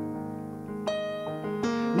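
Digital piano keyboard playing quiet sustained chords, with fresh notes struck about a second in and again near the end.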